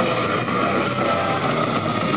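Hardcore metal band playing live: a loud, dense, unbroken wall of distorted guitars, bass and drums, heard muffled with no high end.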